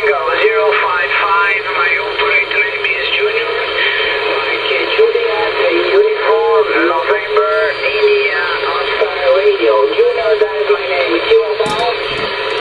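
A distant station's voice received on an 11-metre band radio at 27.560 MHz, coming through the rig's speaker thin and narrow, with steady hiss and a low hum under it. The signal is reported as readable and fairly strong, 5 by 7, and the transmission cuts off at the end.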